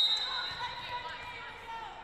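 A referee's whistle: one steady, high-pitched blast lasting about a second, loudest at the start, the signal that authorizes the serve in volleyball.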